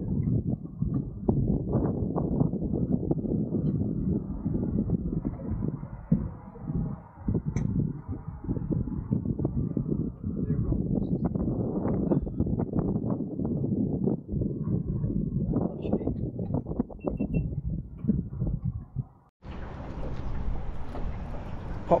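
Wind buffeting the camera microphone in a low, irregular rumble. About nineteen seconds in it drops out briefly and gives way to a steadier, brighter hiss.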